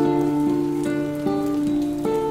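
Steel-string acoustic guitar fingerpicked with a capo, the notes of an arpeggiated chord ringing on over a sustained bass note, a new note plucked about every half second.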